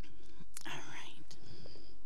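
Hushed speech, close to a whisper, with a short spoken burst about half a second in, over a steady low hum and faint clicks.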